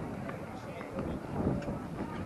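Indistinct voices of spectators talking in the background, with no clear words.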